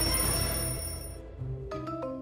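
Background music: a sustained high electronic tone that fades out about a second in, followed by a few held synthesizer notes.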